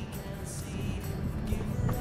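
Low rumble of a car driving slowly along a sandy dirt track, heard from inside the cabin, with faint music.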